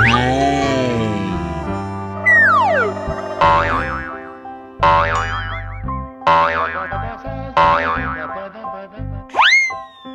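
Cartoon sound effects over children's background music: a crackling noise at the start, a falling whistle-like glide, then four wobbling 'boing' sounds about a second and a half apart. Near the end a quick rising swoop comes with a voice saying 'What?'.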